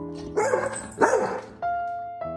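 A dog barks twice in quick succession over soft piano music.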